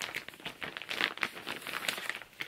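Clear plastic packaging bag crinkling in a run of irregular crackles as leggings are pulled out of it.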